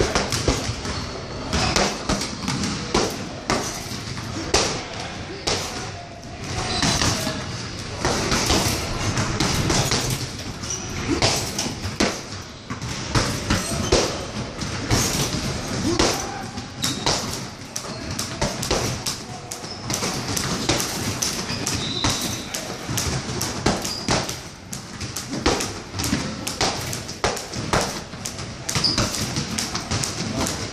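Gloved punches landing on a hanging heavy bag in quick, irregular flurries of thuds, in a large echoing gym hall.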